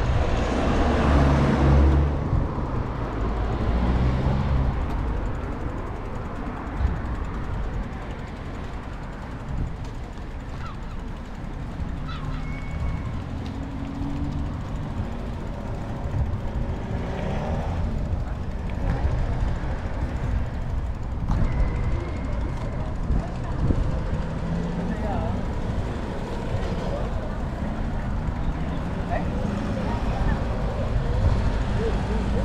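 Wind buffeting the microphone of a camera riding on a moving bicycle, a steady low rumble that surges in the first couple of seconds, with faint voices of people nearby.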